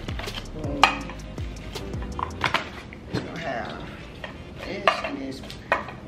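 Glass jars clinking against each other and against a metal wire tray as they are lifted out of a box and set down on the tray: a string of sharp clinks and knocks, the loudest about a second in, about two and a half seconds in, and near the end.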